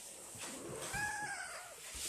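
Domestic cat giving one drawn-out meow about a second long, its pitch arching up and back down, over a steady hiss.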